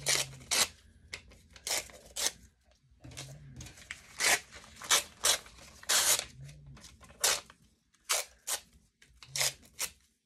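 Magazine pages being torn by hand into small pieces: an irregular run of short, sharp rips, a few a second, with brief pauses.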